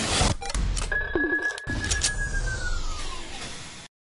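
Logo-reveal sound effect: a flurry of sharp hits and swishes, then about a second in a high ringing tone that holds and then slides downward as it fades, cut off abruptly just before the end.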